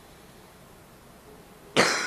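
Faint room noise, then near the end a single sudden loud cough from a person.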